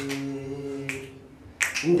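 A man's voice singing a long held note that fades out about a second in, with sharp snap-like clicks at the start and again about a second in. A new, higher and louder sung note begins near the end.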